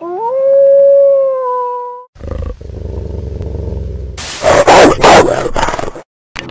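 A wolf howl: one long call that rises at the start and then holds its pitch for about two seconds, followed by a low growl and then a few loud snarls near the end.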